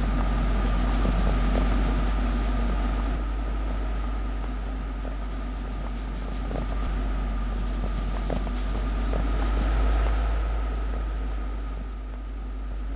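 A steady low rumbling drone with a thin high tone held over it and a few faint clicks, swelling slightly about a second in and again near ten seconds.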